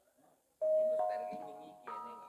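Bronze gamelan instruments struck: three ringing metal notes start about half a second in, the first the loudest, each sustaining and slowly fading as the next is added.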